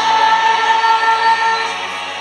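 A choir singing a long held note in a Christmas song, with a youth symphony orchestra's violins and strings bowing along.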